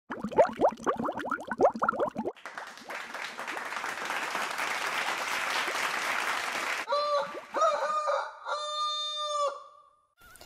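Intro sound effects in three parts: about two seconds of quick, rising pitched calls, then a few seconds of hissing noise like applause, then several held calls, each with a clear pitch and overtones, before it fades out near the end.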